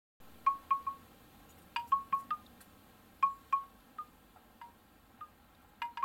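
Wind chimes tinkling: short, ringing tones that die away quickly, struck in loose, irregular clusters of two to four, as the opening of the soundtrack music.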